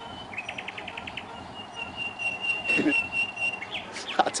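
Birds chirping: a quick run of high chirps, then one long, steady, high whistled note.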